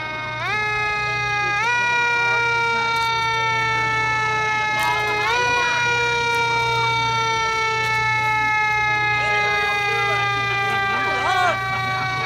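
A vehicle siren sounding continuously, its pitch jumping up quickly several times and sliding slowly down between the jumps. Voices are heard alongside.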